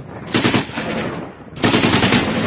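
Automatic gunfire in two long bursts of rapid shots, the first starting about a third of a second in and fading out, the second starting near the end.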